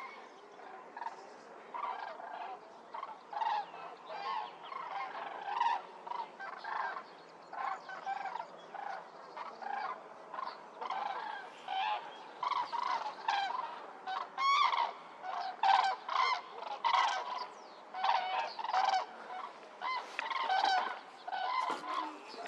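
A large flock of wild geese calling in flight: many short, overlapping honking calls, growing denser and louder from about halfway through.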